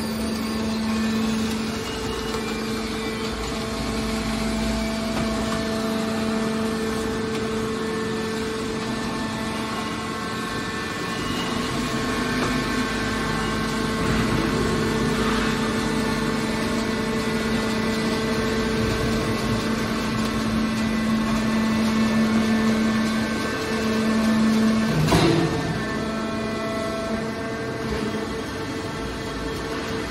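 Hydraulic scrap metal baler running: a steady hum from its hydraulic pump and motor as the rams compress scrap metal, with one sharp metallic knock near the end.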